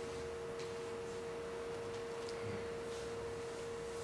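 A steady tone held at one unchanging mid pitch, over faint room noise.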